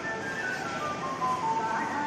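Music: a simple melody of held notes that step down in pitch over about two seconds.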